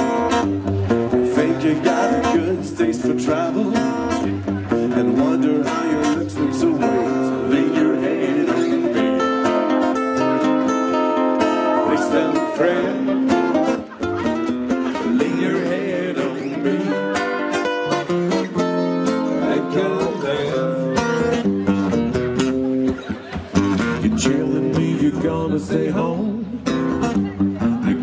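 Live blues band playing a guitar-led song, with strummed guitar over bass and drums; a singing voice comes in near the end.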